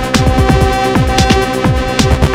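Live electronic music played on hardware drum machines and synthesizers (Yamaha RM1x, Korg Electribe MX, Akai MPC Live, Korg EA-1, Behringer Crave): a steady beat of bass strokes that fall in pitch, several a second, under a held synth tone, with a few hi-hat hits.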